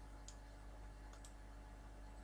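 Two faint computer mouse clicks about a second apart, over near-silent room tone with a steady low hum.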